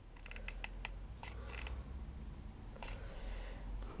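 Light plastic clicks of a hot glue gun's trigger and feed being squeezed several times, most in the first second and a half and one more near three seconds; the gun is not feeding glue properly. A low steady hum runs underneath.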